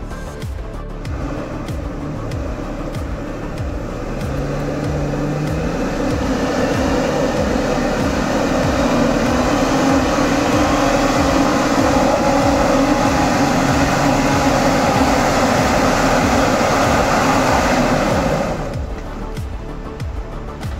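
A Toyota FJ Cruiser's V6 engine revving hard under load as the truck claws up a slippery mud slope. It grows louder as it approaches, then drops away abruptly near the end. Background music with a steady beat runs underneath.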